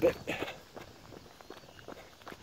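Faint footsteps of a person jogging on foot, a quick, uneven run of light footfalls.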